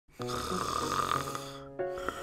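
A person snoring, a dubbed sound effect, over soft background music.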